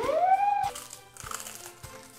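Crunching of a thin, crisp wafer cookie with cream filling being bitten and chewed, a short crackly burst a little past the middle, over background music.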